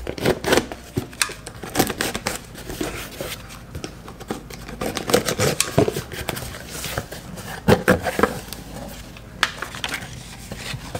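Box cutter slicing through packing tape on a cardboard shipping box, a string of irregular scrapes, clicks and tearing, with the cardboard flaps pulled open near the end.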